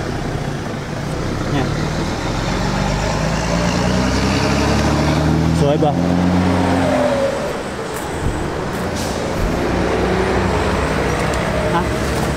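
A motor vehicle's engine drones past, building over the first few seconds and fading out about eight seconds in, its pitch shifting slowly as it goes.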